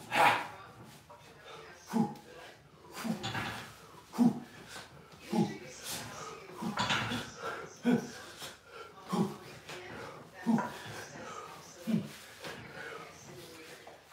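A man breathing hard and grunting in short forceful bursts, about one every second or so, as he strains through a set of pull-ups with a 50-pound plate strapped on.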